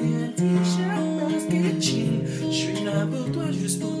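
Acoustic guitar strummed in a steady rhythm, with a man starting to sing the next line near the end.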